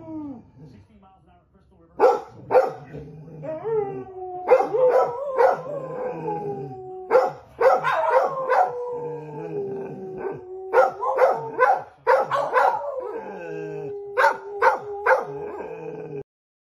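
Two dogs howling together in long, slowly falling howls, starting about two seconds in and broken by repeated short, sharp barks.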